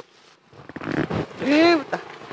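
A man's loud, drawn-out vocal exclamation about a second and a half in, its pitch rising and then falling, after a brief hush and some low talk.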